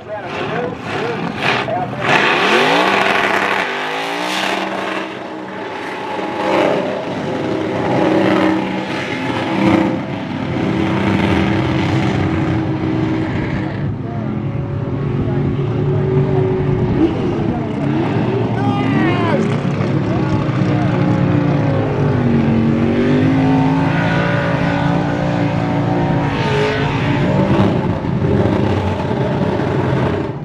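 Supercharged V8 of a Holden Commodore burnout car revving hard through a burnout. The engine is held high with the rear tyres spinning, its pitch climbing early on and then sagging and recovering several times. It is loud.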